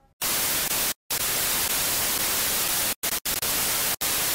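Television static: a steady white-noise hiss, cut off by brief silent gaps about a second in and twice around three seconds in.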